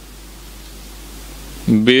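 Steady hiss and low hum from the microphone during a pause, then near the end a man starts chanting a line of Gurbani on held pitches.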